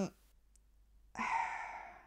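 A woman's audible sigh, a breathy exhale into a lapel microphone about a second in, lasting about a second and fading away.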